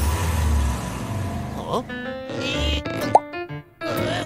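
Cartoon soundtrack: a low rumble with hiss for the first couple of seconds, then light music with short notes and quick rising cartoon slide effects.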